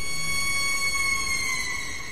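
A sustained, eerie high musical tone with several overtones, held steady while drifting slightly lower in pitch and beginning to fade near the end.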